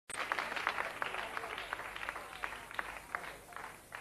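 Studio audience applauding, the clapping thinning out and fading toward the end.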